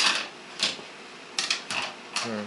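Toy dishes clinking and knocking in a play kitchen's small metal sink as a toddler handles them: a handful of sharp, irregular knocks.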